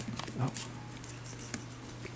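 Six-week-old cavapoo puppies' paws and claws pattering and clicking on a tiled floor as they play, in scattered faint ticks over a low steady hum, with a man's brief "oh" about half a second in.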